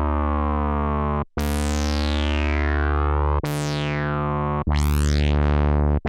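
Korg Prologue analog synthesizer playing a low, funky bass line from two sawtooth oscillators through its resonant filter, three new notes over a held one. On each note the filter envelope sweeps the brightness down and then holds at a sustained level; the last note's tone first rises and then falls.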